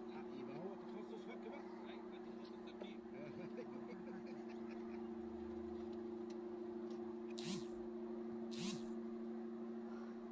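Hand socket wrench on an extension working the steering-column bracket bolts: faint metal clicks and two short rasps, one about seven and a half seconds in and one a second later, over a steady low hum.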